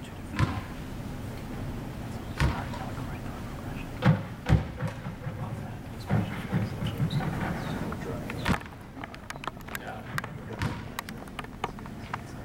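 Rubber balls thrown hard at a wall and bouncing back at a catcher in a blocking drill: about five separate thumps in the first nine seconds, then a run of lighter clicks and taps near the end.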